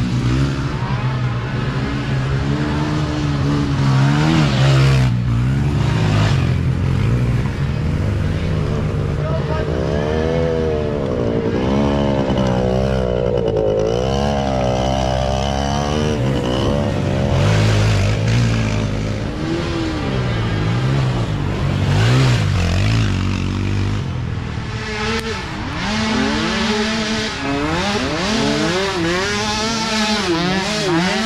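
Small youth micro ATV engines revving hard and easing off as quads ride past one after another, the pitch rising and falling again and again. Near the end several engines overlap.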